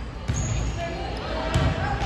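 Indoor volleyball rally on a hardwood gym court: two dull thuds of play just over a second apart, with a short high squeak near the first, and voices echoing in the gym.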